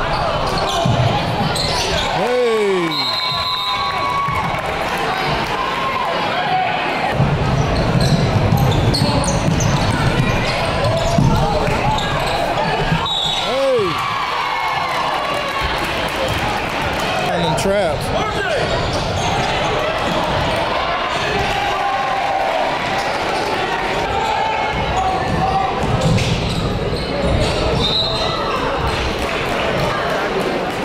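Basketball game sound in a gymnasium: a ball bouncing on the hardwood court under a steady mix of voices from players and spectators, echoing in the hall.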